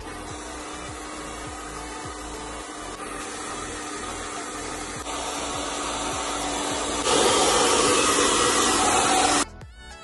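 Vega hand-held hair dryer blowing steadily with a hum, drying wet hair. It gets clearly louder about seven seconds in and cuts off suddenly shortly before the end.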